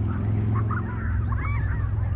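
Several birds calling, with many short whistled and chirping notes that overlap, over a steady low rumble.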